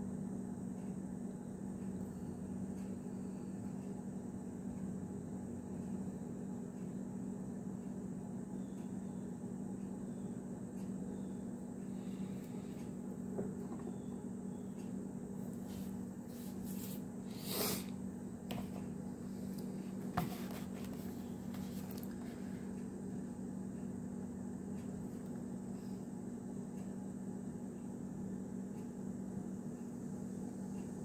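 Steady low background hum, with a few light clicks and two sharper taps a little past the middle as a small diecast car and its metal collector tin are handled.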